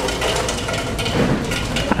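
Close handling noise: a baseball cap's fabric and sweatband rubbed and turned by hand right against the microphone, an uneven rustling and scuffing over a low steady hum.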